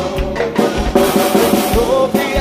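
Live band playing axé/forró music: drum-kit beats under sustained melody-instrument notes, with no lead vocal.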